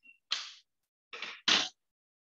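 Three short, sharp noises from metal dissecting scissors at a small fish's head as they are worked and then set down in a plastic tray, the third the loudest.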